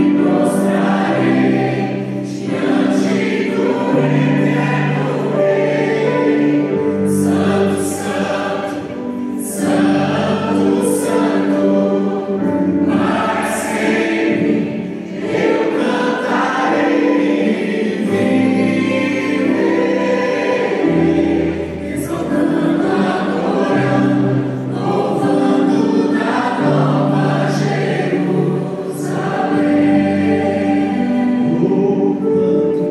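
Mixed church choir singing a Portuguese-language gospel hymn through a PA system, over instrumental accompaniment with long held bass notes.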